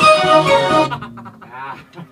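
Keyboard and electric guitar playing a loud held chord that cuts off about a second in, followed by quieter scattered notes over a low steady tone.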